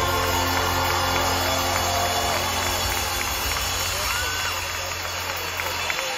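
The last chord of a live pop-rock song held with sustained bass and keys, fading and stopping near the end. Underneath, a concert crowd cheers with shouts and whistles.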